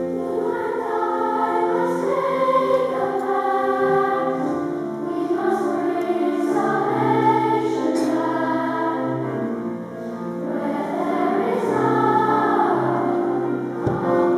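A boys' choir singing together, holding long notes that move from pitch to pitch.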